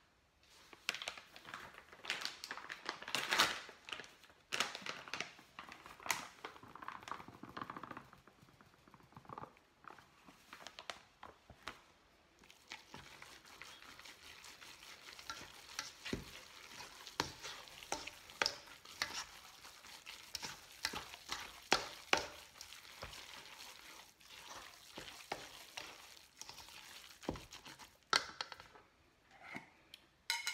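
A moist, crumbly bread batter of vegetables, grains and flour being mixed by hand in a stainless steel bowl: continuous rustling and squelching, with scattered sharp taps against the bowl.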